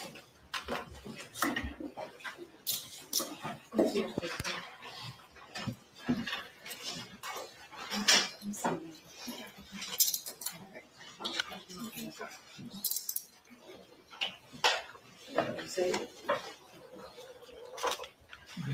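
Metal handcuffs and restraint chains clinking in irregular sharp clicks as they are put on and locked at the wrists, with low murmuring voices and shuffling around them.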